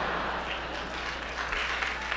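Live comedy-club audience laughing and applauding after a punchline, a steady wash of crowd noise that eases off slightly.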